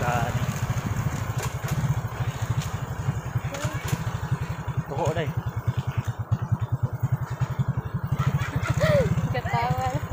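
Suzuki Raider J 115 Fi motorcycle's single-cylinder four-stroke engine running as the bike is ridden along, with a fast, even low pulse.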